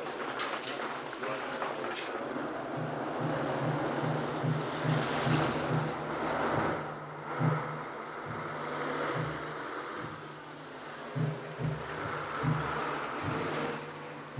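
City street traffic: a steady rush of passing car and lorry engines, with a low pulsing note that comes and goes.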